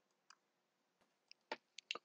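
Near silence broken by a few faint computer mouse clicks, most of them in the second half.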